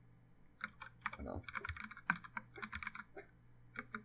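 Computer keyboard typing in quick runs of keystrokes, starting about half a second in and stopping just before the end.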